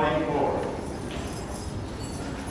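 A man's voice calling out at the start, fading within about half a second, followed by low hall sound.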